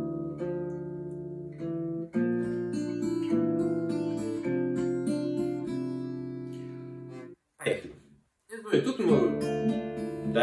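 Steel-string acoustic guitar played fingerstyle: picked notes ring out over a held chord, with a fresh chord about two seconds in. The strings are damped suddenly a little after seven seconds, there is a short scrape, and the picking starts again near the end.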